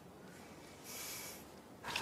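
A person's short, faint sniffle about a second in, otherwise low quiet.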